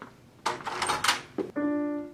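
A single piano note struck about one and a half seconds in and held steadily, after a short spoken "No."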